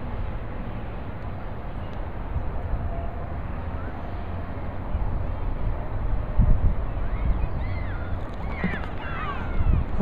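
Wind buffeting the microphone in uneven low rumbling gusts that grow stronger in the second half. Faint high sliding calls come through near the end.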